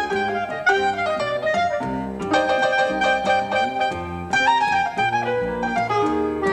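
Clarinet, piano and double bass trio playing a Latin-flavoured jazz étude: busy piano chords over plucked double bass notes, with the clarinet holding longer notes.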